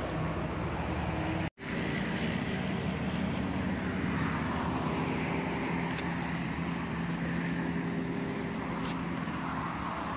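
Classic Mini's four-cylinder engine idling steadily while parked, with a brief break in the sound about a second and a half in.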